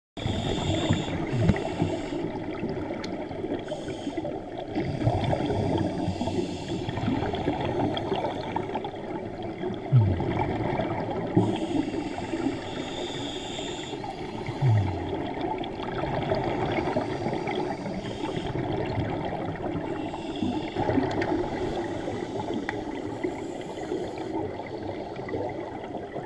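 Underwater sound picked up through a diving camera: a continuous burbling wash of scuba bubbles and water noise, with brief hissy surges every few seconds, in the rhythm of a diver breathing on a regulator. A few short low thumps stand out about ten, eleven and fifteen seconds in.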